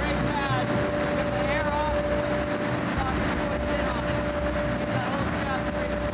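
Steady drone of a fishing boat's engine room, with the diesel running and a held hum on top. A man's voice comes through the noise at times.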